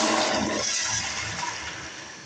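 2017 Zurn EcoVantage pressure-assist toilet flushing: a loud rush of water that gradually fades.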